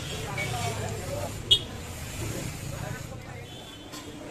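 Indistinct background voices over a low traffic-like rumble, with one sharp click about one and a half seconds in.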